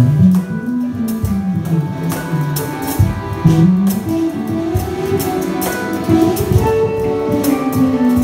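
Folk-instrument ensemble playing a handpan piece together: plucked strings, button accordion and flute over a handpan, with a melody moving up and down in the low register and frequent plucked attacks.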